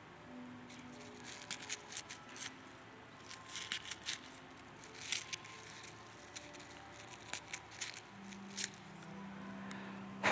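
Paper napkin being torn and folded by hand: an irregular string of short, sharp rips and rustles, with faint held music notes underneath.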